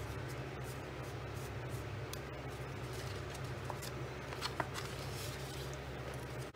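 Cardstock being folded and creased by hand along its score lines, with light crackles and rustles of paper over a steady low hum.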